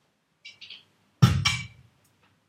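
An electronic club dance drum loop previewed in GarageBand plays through speakers: two light high clicks, then a heavy kick-drum hit with deep bass and a second beat just after it, both dying away quickly.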